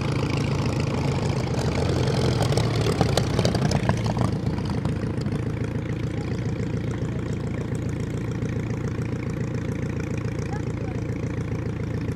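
Klemm 35D's four-cylinder inverted inline Hirth engine running throttled back on landing, a steady low drone. It is loudest about three to four seconds in as the plane passes close, then settles a little quieter as the aircraft rolls out.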